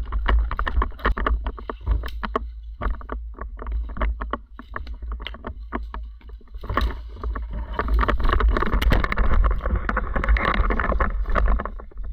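Rustling and crackling of a person moving through forest undergrowth, with a steady low rumble on the camera microphone. The noise eases off from about two to six seconds in, leaving separate snaps and ticks, then picks up again.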